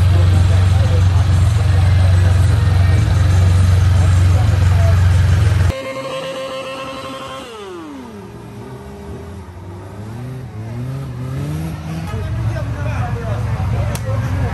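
A loud, steady low rumble for about the first six seconds, then a sudden change to a car engine revving hard during a burnout: the revs drop and then climb again in steps.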